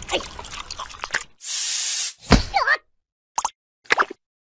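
Cartoon sound effects: a short steady hiss, then a plop with quick gliding cartoon voice sounds, and two brief blips after a silence.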